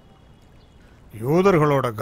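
A brief lull with only faint background hiss, then a man's voice begins speaking about a second in.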